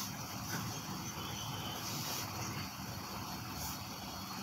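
Steady low rumble of background noise with no distinct event, of the kind left by distant traffic or room ambience.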